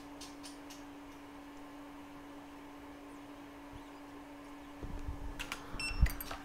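A steady low hum of workshop equipment, one even pitch throughout. A few faint light clicks come in the first second, and a cluster of small clicks with short high beeps comes near the end.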